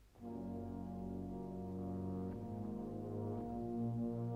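Brass band playing slow, sustained full chords with a deep bass. The band enters just after a brief silence at the very start.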